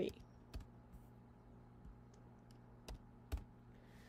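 About five separate, sharp computer keyboard and mouse clicks, spaced unevenly over a few seconds, as dimension values are typed in. A faint steady low hum lies under them.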